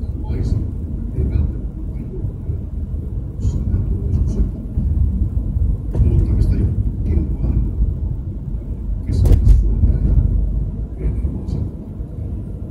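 Road and tyre rumble inside the cabin of a moving Mercedes-Benz car, with a few short sharp knocks, the loudest a little after nine seconds.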